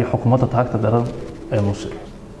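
Only speech: a man talking, one phrase through the first second and a short one near the end.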